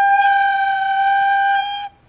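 An Irish penny whistle (tin whistle) sounding one long, steady G note, blown gently and held for about two seconds before it stops shortly before the end.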